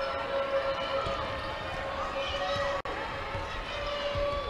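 Arena crowd noise with a basketball being dribbled on the hardwood court.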